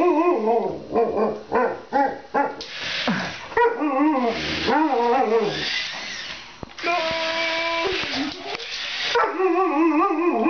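Alaskan Malamute vocalizing in play: a string of whining and yipping calls that bend up and down in pitch, with stretches of rough hissing noise between them and one steady held tone about seven seconds in.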